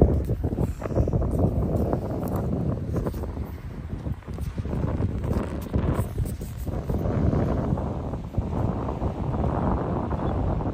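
Wind buffeting the phone's microphone: a low, uneven rumble that swells and drops in gusts, with crackles, loudest right at the start.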